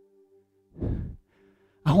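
A man's breathy exhale or sigh into a headset microphone about a second in, over faint held keyboard pad chords; he starts speaking again near the end.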